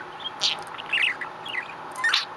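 A budgerigar chirping: a handful of short, quick chirps scattered through the two seconds.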